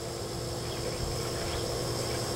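Steady background sound: a constant low hum under a faint, steady high-pitched buzz, with no distinct knocks or clicks.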